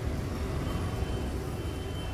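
Steady low rumble of background noise.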